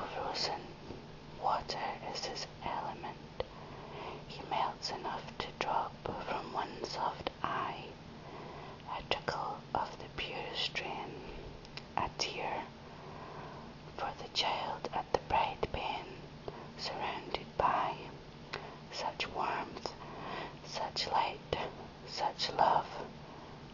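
A person whispering close to the microphone in soft breathy phrases with sharp hissed consonants, over a faint steady low hum.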